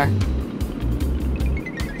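Background music with a bass line moving in short steady notes.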